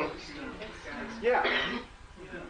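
Indistinct conversational speech, with a person loudly clearing their throat about a second and a quarter in.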